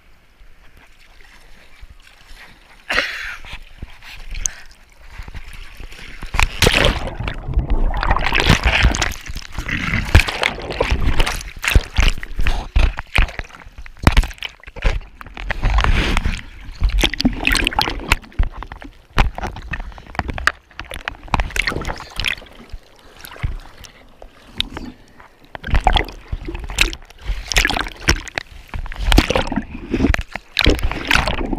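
Seawater splashing, sloshing and gurgling over a surfboard-mounted camera, loud and irregular from a few seconds in, with low rumbling buffeting of the microphone.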